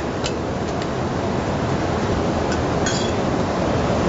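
A few light clinks of clam and mussel shells going into a serving dish, four in all, over a steady kitchen background noise.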